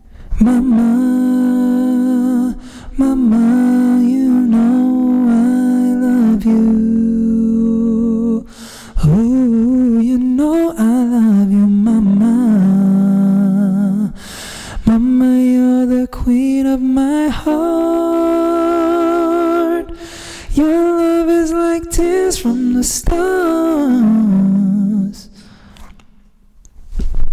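A man's voice singing long, held melodic phrases without clear words into a microphone fed through a vocal harmony pedal, a second harmonising voice moving in parallel with the lead. The notes bend and waver, in about six phrases broken by short pauses.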